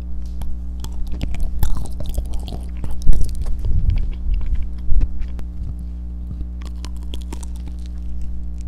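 Close-miked chewing of a white-chocolate-coated banana: wet mouth sounds and small clicks, busiest in the first five seconds, with two louder knocks about three and five seconds in. A steady low hum runs underneath.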